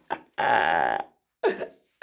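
A person's loud, rough, drawn-out vocal sound lasting about half a second, starting suddenly, followed after a short pause by a briefer vocal sound.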